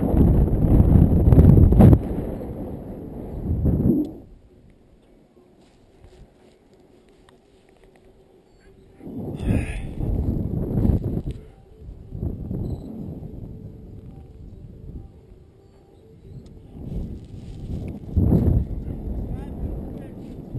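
Wind rushing over an action camera's microphone as a rope jumper swings on the rope. It is loud for about the first four seconds, drops almost away for several seconds, then comes back in several swells from about nine seconds in.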